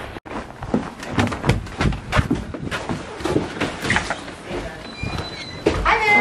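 Irregular knocks and scuffs of footsteps and hand-held camera handling while walking, with a louder knock just before the end.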